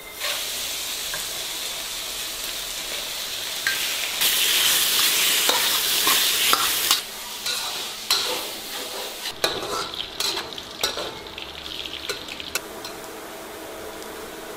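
Cubes of pork belly sizzling in oil in a hot wok as their fat renders out, with a metal spatula scraping and knocking against the wok as they are stirred. The sizzle starts suddenly, is loudest about four to seven seconds in, then eases while the spatula clicks come more often.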